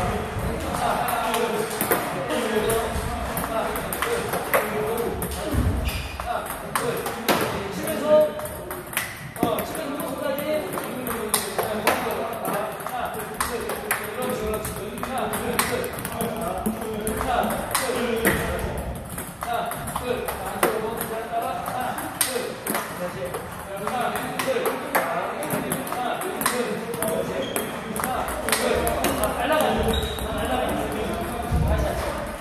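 Table tennis rally: a ball repeatedly clicking off the rubber paddles and the tabletop in quick back-and-forth exchanges of backhand strokes.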